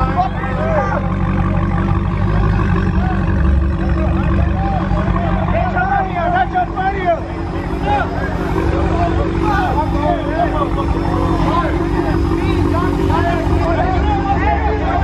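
Dodge Challenger's engine idling, a steady low rumble, under the chatter and shouts of a surrounding crowd.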